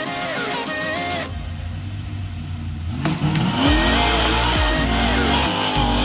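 Rock music with guitar for about the first second, then a car engine rumbling low, and from about three seconds in the engine revving hard, its pitch rising and falling, with tires squealing as the car launches.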